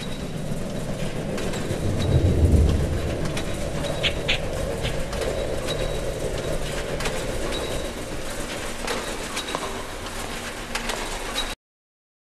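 Noisy background ambience with no music, scattered faint clicks and a couple of brief high chirps, which cuts off abruptly near the end.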